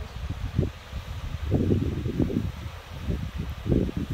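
Wind buffeting the microphone in irregular gusts, a low rumble that swells and drops from moment to moment.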